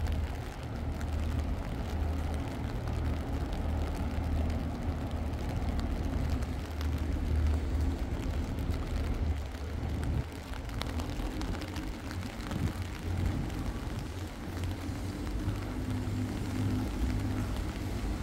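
Outdoor ambience of steady rain with a continuous low rumble underneath.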